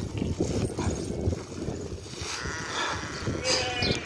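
Woven plastic sack rustling and crackling as raw sheep's wool is pressed down into it by hand. Sheep bleat in the background in the second half.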